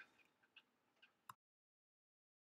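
Near silence: faint room tone with three faint ticks, then the sound cuts to dead silence about a second and a half in.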